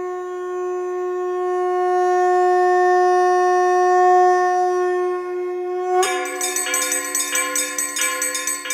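Channel logo sting: one long, steady horn-like note, then about six seconds in a run of bright bell and chime strikes in quick succession, ringing out near the end.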